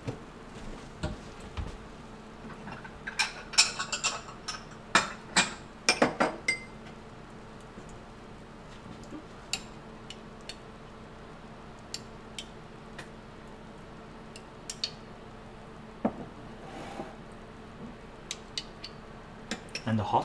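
Kitchen clatter of dishes and cutlery clinking and knocking at a counter, busiest a few seconds in and then sparse single clicks, over a faint steady hum.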